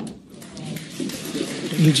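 Mostly voices: talking and vocal reaction over a background haze of noise, with a man's speech growing louder near the end.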